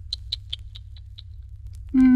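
A quick series of about six short, high-pitched clicks in the first second or so, over a low steady hum.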